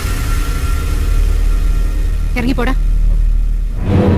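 A low, rumbling dramatic film-score drone with faint held tones underneath, and one short spoken word about two and a half seconds in.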